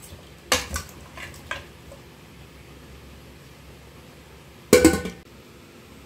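A few metal clinks of stirring in a pressure cooker in the first second and a half. Then, near the end, one loud ringing metal clank as the pressure cooker lid is put on.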